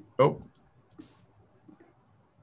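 A man says a short 'oh', followed by a few faint clicks and a brief burst of hiss over a video call whose audio is cutting in and out.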